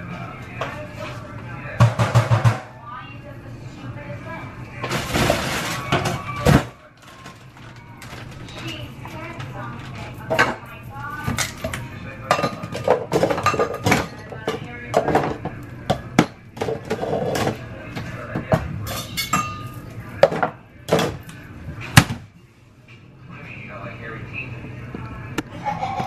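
Kitchen clatter: dishes, pans and utensils clinking and knocking at irregular intervals, with a broad burst of noise lasting over a second about five seconds in.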